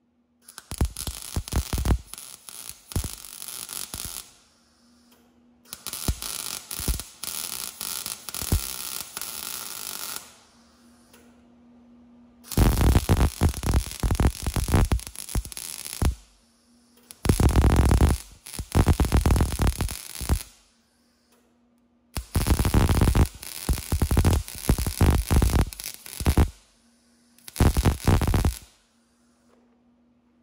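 MIG welder arc crackling in six separate runs, most of them three to four seconds long and the last one short. A low steady hum remains in the pauses between the runs.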